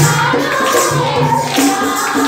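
A group of women singing a Christian hymn together into microphones, with tambourine and a steady beat in the accompaniment.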